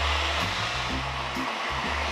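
Countertop blender running at speed, grinding chunks of pear, onion and ginger with salted shrimp into a smooth paste.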